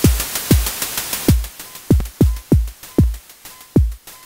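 A drum pattern from a software modular synth (VCV Rack): synthesized kick drums that drop in pitch, under a fast run of white-noise hi-hat ticks about eight a second. The newly patched hi-hat comes in as a loud, harsh wash of white noise that is cut back to short ticks about a second in. Later a short tone near 1 kHz recurs with some of the hits.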